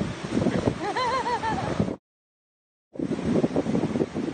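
Wind buffeting a phone microphone, with a short burst of voice about a second in. About two seconds in the sound cuts out completely for nearly a second at an edit, then wind noise resumes with surf beneath it.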